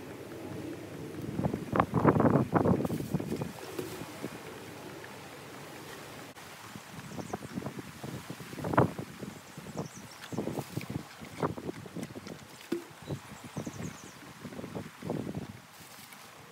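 Water sloshing and dripping in plastic basins as wet cotton clothes are lifted out and squeezed by hand. A dense burst of splashing comes about two seconds in, then irregular splashes and drips, the sharpest near the middle.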